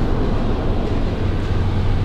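Steady rush of a Scion FR-S's air-conditioning blower running on full blast inside the cabin, over a low, even hum from the idling engine.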